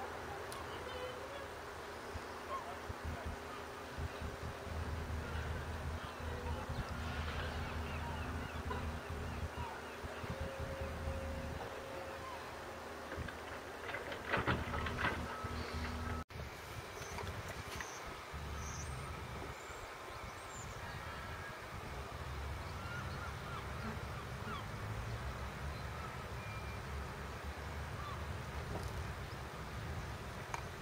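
Outdoor wind buffeting a sock-covered microphone as a fluctuating low rumble, with a short run of knocks and rustles a little after halfway and a brief dropout just after them.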